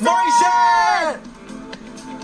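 A voice singing one held, wavering phrase for about a second, played back from a performance video, then dropping to quieter music with faint clicks.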